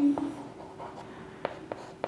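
Chalk writing on a chalkboard: faint scratching with a few short taps, one just after the start and two close together about one and a half seconds in.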